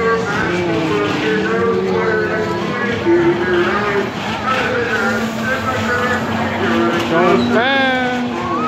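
Several voices of riders and onlookers talking and calling out over one another, over a steady mechanical hum from the spinning ride. Near the end one voice rises sharply in a loud whoop.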